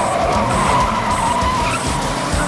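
Car tyres squealing as a minivan speeds off: one long screech, with music playing behind it.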